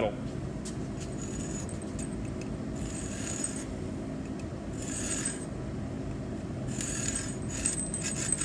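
Lenox hacksaw blade drawn slowly across a steel electrical pipe held in a vise: about four short, faint scraping strokes roughly two seconds apart, the slow draws that start the cut into the metal. A steady low hum runs underneath.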